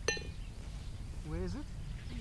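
A putter striking a golf ball once: a sharp click with a short metallic ring, right at the start.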